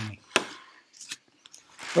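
A single sharp click about a third of a second in, then a few faint ticks, and a breath just before speech resumes near the end.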